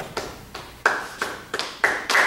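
An audience starting to clap: a few scattered single hand claps, coming quicker and louder as more people join, and building into applause at the very end.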